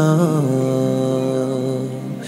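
Male voice singing a Bengali Islamic song, holding one long steady note at the end of a sung line, fading slightly near the end.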